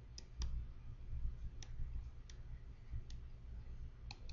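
A handful of faint, irregular clicks of a stylus tip tapping on a tablet computer's screen while handwriting, over a low steady hum.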